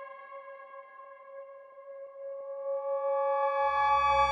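Behringer ARP 2500 modular synthesizer holding a steady cluster of high, pure-sounding tones with a few faint crackles. About three and a half seconds in, a low bass drone and brighter upper tones come in and the sound grows louder.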